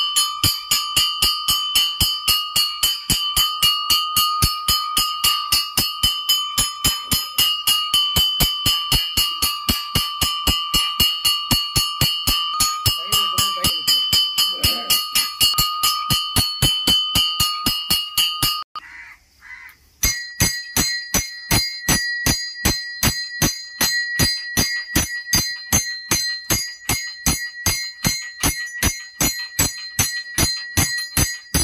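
Temple bell rung during the abhishekam in steady rapid strokes, about four a second. After a brief break about two-thirds of the way through, a bell with a higher ring takes over at the same pace.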